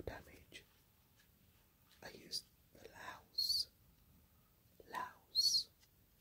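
Soft whispering in short phrases, with hissed 's' or 'sh' sounds about three and a half seconds in and again near the end.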